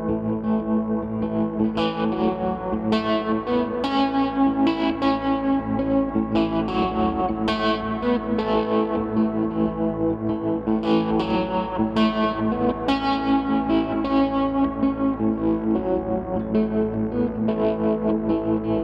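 Red semi-hollow electric guitar playing an instrumental passage of a slow folk-pop song live. Picked notes start about twice a second and ring over sustained low notes.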